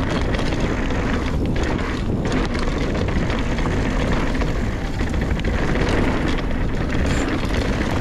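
Mountain bike rolling fast down a dirt trail: steady tyre noise over dirt and rocks with scattered clicks and rattles from the bike, and wind rumbling on the microphone.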